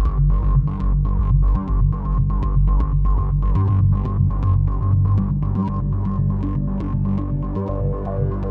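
Electronic synthesizer jam on a Behringer Neutron and an Uno Synth. A throbbing low bass drone plays under a fast, even run of sharp ticks, about five a second, and a steady mid-pitched tone. The bass line shifts up in pitch about halfway through.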